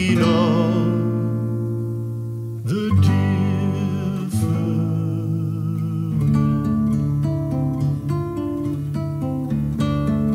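Nylon-string classical guitar built by Stephen Kakos, played fingerstyle: a chord rings and fades, new chords are plucked about three and four seconds in, then quicker picked notes follow from about six seconds.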